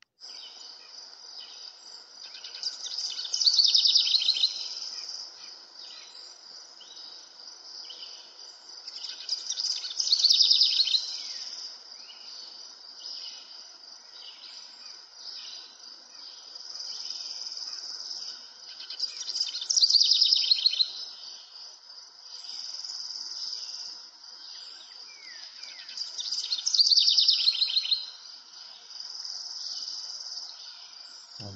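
Birds chirping over a steady high-pitched trill, cutting in suddenly, with four louder bursts of rapid chirping spaced several seconds apart.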